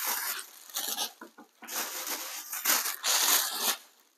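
Paper packaging rustling and crinkling in several bursts as it is handled and pulled apart, the loudest burst near the end.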